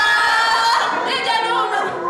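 Women's voices singing unaccompanied through stage microphones: a long held note that breaks into shorter, shifting notes just under a second in.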